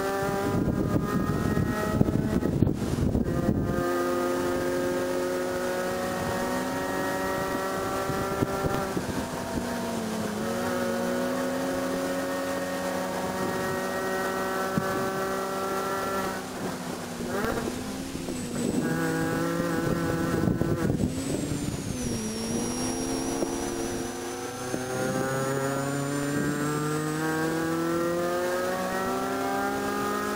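2006 Mini Cooper S JCW's supercharged four-cylinder engine, heard from inside the cabin, running hard at high revs with its pitch slowly climbing. A little past halfway the pitch drops and wavers as the car brakes and shifts down, then it climbs steeply again in the last few seconds. A rough rumble sits under the engine for the first few seconds.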